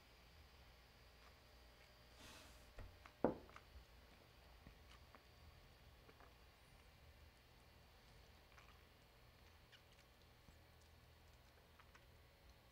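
Near silence while whisky is tasted: a soft breath about two seconds in, then one sharp click about three seconds in as the tasting glass is set down on the bar top, with a few faint mouth clicks after.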